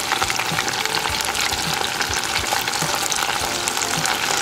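Breaded okra deep-frying in hot oil in an enamel saucepan: a steady, dense sizzle with fine crackling.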